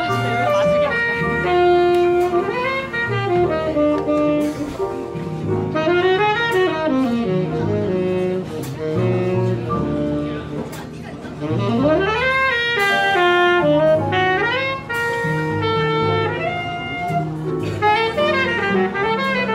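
Live jazz trio: a Lineage tenor saxophone plays fast improvised runs, with swoops up and down in pitch, over walking double bass and drums with cymbals.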